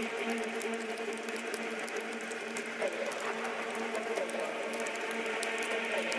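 Beatless stretch of an electronic dance track: a synth drone holds steady low notes under a haze of hiss and scattered crackle, with no drums or bass.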